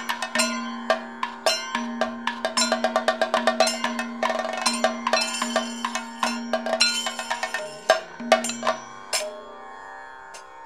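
Kathakali percussion: rapid, ringing metallic strokes typical of the chengila gong and ilathalam cymbals together with chenda and maddalam drumming, over a steady drone. The strokes thin out to a few strikes near the end.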